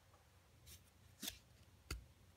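Three short, faint flicks of baseball cards being slid off the top of a hand-held stack, the last and loudest near the end.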